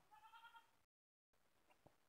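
Near silence, with one faint, brief, high bleat-like animal call in the first half second, then a short total cut-out of the audio and a few faint clicks.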